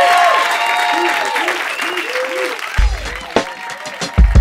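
Live audience applauding and cheering, the applause slowly dying down. A hip-hop beat with heavy bass kicks in near the end.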